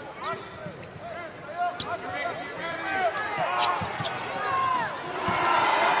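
Basketball shoes squeaking repeatedly on a hardwood court as players cut and stop, with a few knocks of the ball. Crowd noise swells in the last second.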